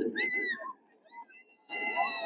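High-pitched screams: a short cry that bends up and down at the start, then a long, steady held scream beginning near the end.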